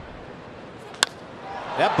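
Wooden baseball bat solidly striking a 97 mph pitch: one sharp crack about a second in, over a low steady stadium crowd murmur. The ball is driven for a home run.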